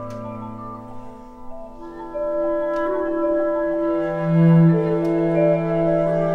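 Clarinet and cello playing slow, long sustained notes that overlap in a quiet contemporary chamber texture. The sound thins out around the first couple of seconds, then fills in again with a louder low note swelling about four seconds in. A few faint taps sound over the held notes.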